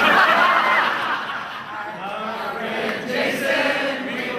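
A roomful of people laughing together, loudest in the first second and carrying on more loosely after.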